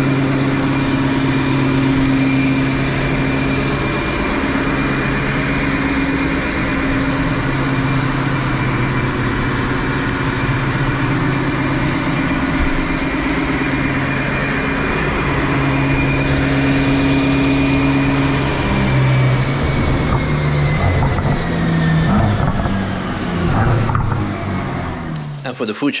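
Mercedes-AMG GT Black Series twin-turbo V8 running at a steady, moderate speed on a chassis dyno while the new engine is being broken in, with a steady high whine above the engine note. Over the last several seconds the whine slides down in pitch and the engine note becomes uneven as the run winds down.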